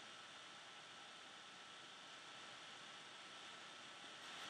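Near silence: a faint, steady hiss of background noise.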